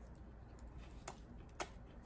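Faint wet mouth clicks of a person chewing a sandwich with the mouth closed, a few sharp ticks with the loudest about one and a half seconds in.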